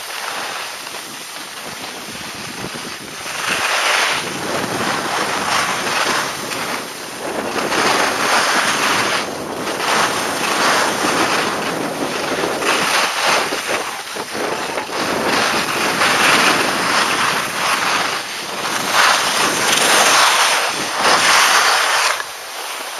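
Skis hissing and scraping over packed snow on a downhill run, mixed with wind rushing over the camera's microphone. The noise swells and fades every second or two.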